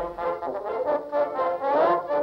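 Early acoustic recording of brass-band music playing back on an Edison cylinder phonograph: several held, wavering notes with a thin, old-record sound lacking any high treble.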